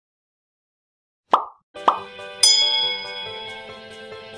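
Silence, then two short pop sound effects about half a second apart, followed by gentle background music with held notes.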